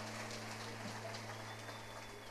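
Faint, steady low electrical hum from the stage amplifiers and sound system standing idle, with a few faint scattered ticks.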